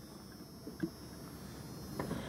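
Quiet pause holding a faint steady hum with a thin high-pitched whine over it, and one soft brief sound a little under a second in.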